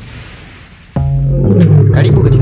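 A lion's roar played as a logo sound effect. It starts suddenly and loudly about a second in, with music underneath.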